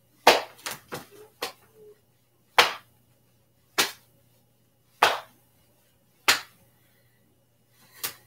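Sharp slaps as arms swing closed across the chest, hands striking the body near the clip-on microphone: four quick hits in the first second and a half, then one about every second and a quarter.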